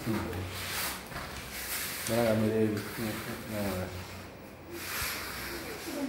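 Bodies and clothing rubbing and sliding on interlocking foam floor mats as wrestlers shift position, in several short brushing spells; a voice sounds briefly twice in the middle.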